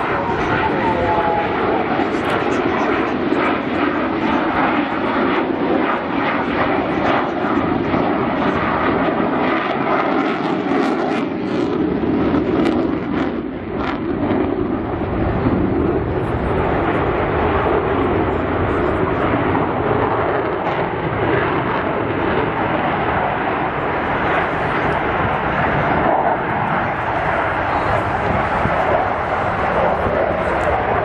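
Jet noise from a Belgian Air Force F-16's single turbofan engine, loud and continuous as it flies its display. A deeper rumble comes in about halfway through.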